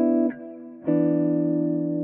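Clean hollow-body electric guitar playing inversions of a three-note Cmaj7(9) chord voicing. One chord rings and is damped just after the start, then the next inversion is plucked about a second in and held.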